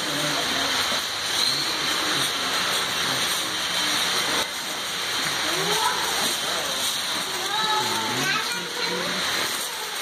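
Steady rush and splash of falling water from an exhibit waterfall, with people's voices talking over it in the second half.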